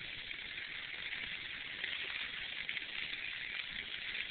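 Steady, low hiss of a bicycle rolling along a dirt path while being towed by a dog team, with no distinct knocks or calls.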